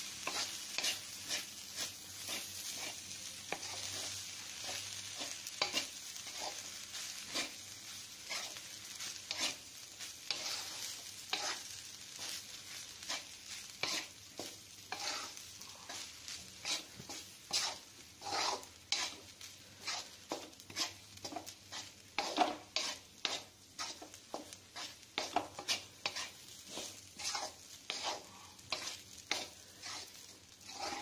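A spatula scraping and knocking against a heavy black pan as cooked rice is stirred and turned over in tomato masala, in a long run of short, sharp strokes about one or two a second, over a faint sizzle.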